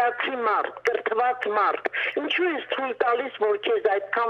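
Continuous speech in a thin, phone-line voice: a caller talking over a telephone connection into the broadcast. A faint steady low hum lies under it.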